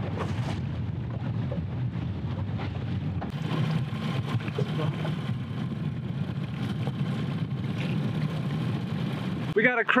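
Boat's outboard motor running steadily at trolling speed, a low even rumble mixed with wind and water noise. A man's voice starts near the end.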